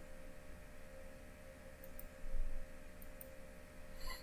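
Quiet room tone under a faint steady electrical hum, with a few faint clicks and a soft low bump a little past halfway.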